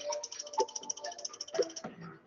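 Quiz game countdown music: a fast, even rattling tick over a low, steady tone, which stops just before the end.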